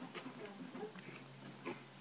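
Faint chewing and mouth sounds of someone eating a bowl of breakfast cereal, with a few small clicks.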